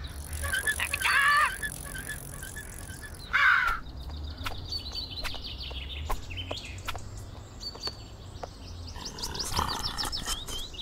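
Two loud wavering animal calls, about a second in and again about three and a half seconds in, followed by scattered small chirps and ticks over a low steady hum, as in night-time cartoon ambience.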